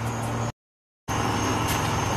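Steady background hum with a faint high whine, cut off by about half a second of dead silence a little after the start, then resuming unchanged.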